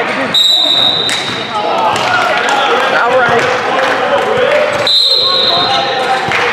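Referee's whistle blown twice, a steady high blast about a third of a second in and a second one near the end, over a basketball bouncing on the gym floor and players and spectators calling out.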